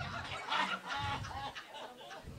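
Comedy club audience laughing at a punchline: several voices laughing and hooting in short, broken bursts.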